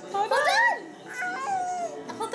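A baby's high-pitched squealing: a short squeal that rises and falls, then a longer one that slides down in pitch.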